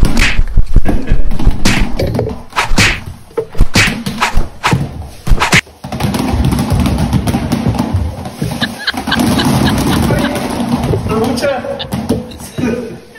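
Dozens of small foam toy footballs raining down from above, thumping and bouncing on a tiled floor and on a person, in a rapid run of impacts that is densest in the first half.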